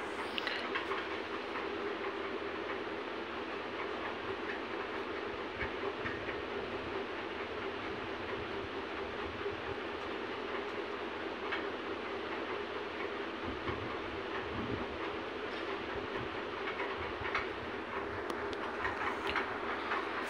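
A steady background hum and hiss with faint, scattered ticks.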